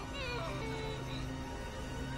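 Low, steady horror-film score drone, with a short wavering, falling cry in roughly the first second.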